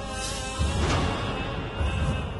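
Transition sound effects: swishing sweeps with two deep low booms, about half a second in and near the end, as the background music fades out.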